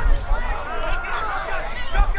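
Indistinct shouts and calls from several footballers on the ground, voices overlapping.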